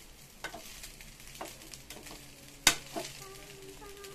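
Metal spoon stirring fried rice in an aluminium kadai over the flame, with a soft frying hiss underneath. The spoon knocks against the pan a few times, the sharpest clack about two and a half seconds in.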